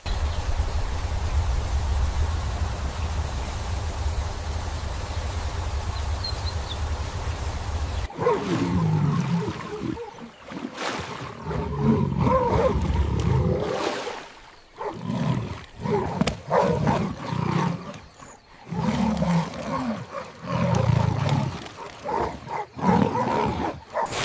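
A steady rushing, rumbling noise for about eight seconds, which stops suddenly. Then come a series of deep animal roars and growls, each lasting a second or two, from large wild animals.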